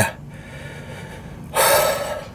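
A man's heavy breath out, one loud airy sigh lasting about half a second near the end, from exhaustion.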